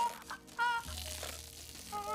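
Clear tape being peeled off its roll and wound around a person's head, a noisy peeling sound, with a song playing underneath.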